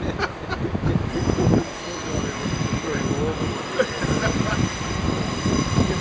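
Class 47 diesel locomotive running with a low, steady rumble as it slowly approaches out of a tunnel, with people's voices and chatter over it.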